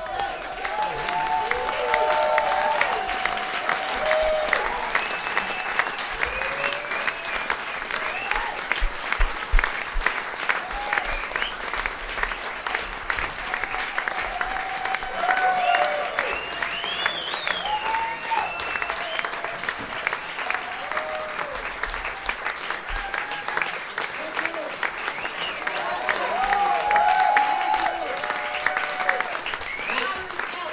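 Audience applauding after a performance, dense steady clapping with voices calling out over it, swelling slightly near the end.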